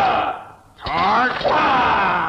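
Men's voices shouting in a combat drill: one shout trails off, then from just under a second in a group yells together in a long, loud shout.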